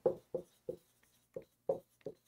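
Dry-erase marker writing on a whiteboard: a string of short, separate strokes, about six in two seconds, as letters are written out.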